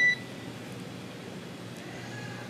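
One short electronic beep at the very start, the tone that marks a radio transmission on the mission communications loop, followed by a faint steady hiss.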